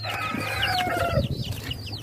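Farmyard fowl clucking and calling: many short, repeated high calls, with a longer held call through about the first second.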